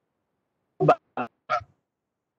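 Three short, garbled fragments of a voice breaking up over a choppy video-call connection, starting about a second in, each cut off abruptly with dead silence between them.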